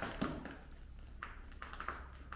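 A few faint, light taps and clicks over a low, steady rumble of room noise.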